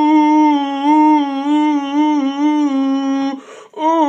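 A person humming one buzzy, sustained note with small regular dips in pitch. The hum breaks off briefly near the end and starts again.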